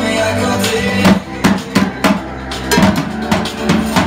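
Sonor acoustic drum kit played along to a recorded pop-rock song: from about a second in, a run of loud separate hits on snare, toms and bass drum stands out over the song's music.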